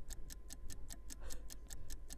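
Countdown-clock sound effect ticking rapidly and evenly, about nine or ten ticks a second, as the sale's 30-second clock runs through its final seconds.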